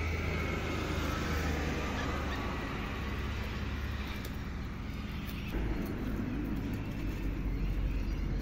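Steady low outdoor rumble, like distant road traffic.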